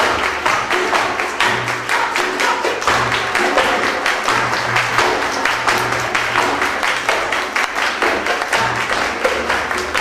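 Live flamenco music: plucked strings and a frame drum, with a line of performers clapping palmas and a flamenco dancer's footwork striking the stage in quick, sharp beats throughout.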